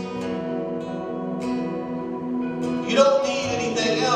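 Live worship song with acoustic guitar accompaniment and a man singing. A sustained chord gives way to a new sung phrase about three seconds in.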